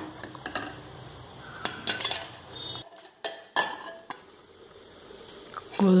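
A metal ladle clinking against a steel cooking pan: a few sharp, ringing clinks about two seconds in and again around three and a half seconds.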